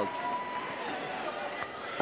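Steady background murmur of an indoor basketball arena crowd and court noise during a stoppage in play.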